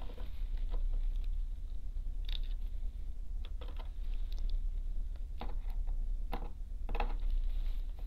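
Light, irregular clicks and taps of fine metal tweezers handling a small capacitor and wires on a wooden work board, over a steady low hum.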